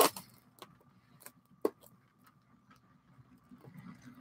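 Motorised LEGO passenger train running on plastic track: a faint steady motor hum with a few scattered sharp clicks, the loudest at the very start.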